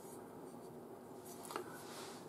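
Quiet pause with a faint rustle of the metal bayonet hilt being handled and turned in the hand, and a light click about one and a half seconds in.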